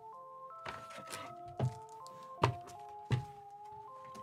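Background music, a simple melody of stepped chime-like notes, with three sharp knocks in the second half as hard plastic graded-comic slabs are set down and handled on the table.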